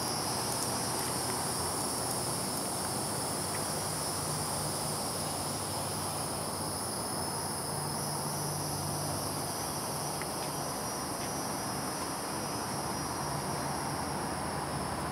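Steady, high-pitched insect chorus of crickets or similar insects, with a low hum coming and going underneath.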